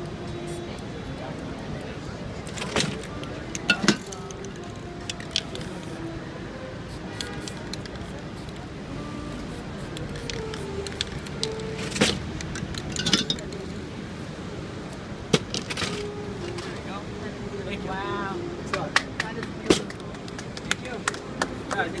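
Spray-paint cans and painting tools clicking and knocking against a table, with short hisses of spray, over a steady street background of music and voices.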